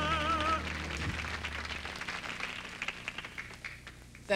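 A woman's held sung note with a wide vibrato over backing music, ending about half a second in, then applause that fades away.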